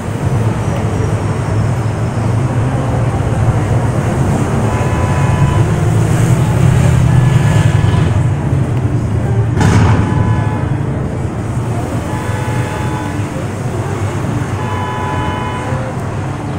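Outdoor street and car-park ambience: a steady low rumble of traffic. Faint tones come and go now and then, and there is one brief sharp noise about ten seconds in.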